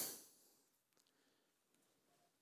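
Near silence, after a spoken word fades out at the very start.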